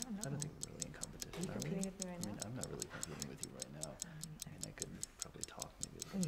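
Faint, even ticking, about five ticks a second, like a ticking-clock sound effect, over a faint murmur of voices.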